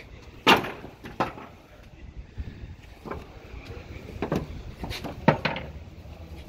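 Irregular sharp knocks and clacks of tie-down straps and their hooks being fitted on a wooden-decked trailer, the loudest about half a second in and another pair near the end.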